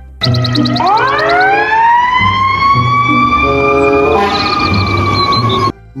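Fire engine siren winding up: a single wail that rises steeply in pitch over about two seconds, then holds steady and cuts off suddenly near the end. Background music with a steady beat runs underneath.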